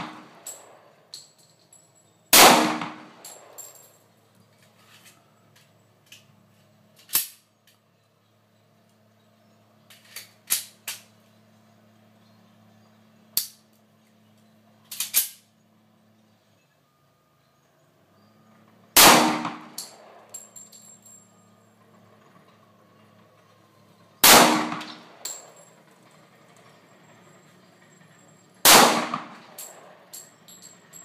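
Kimber Eclipse .45 ACP pistol firing single shots: one loud report about two seconds in, then after a long gap three more about five seconds apart near the end, each with a short echo. Fainter sharp cracks fall in the gap between them.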